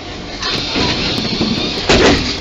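Tram interior noise: a steady rumble and hiss, a little louder from about half a second in, with a sudden loud noise just before the end.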